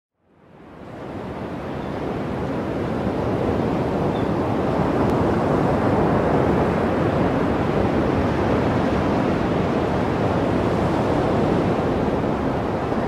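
Ocean surf: a steady wash of breaking waves, fading in from silence over the first couple of seconds.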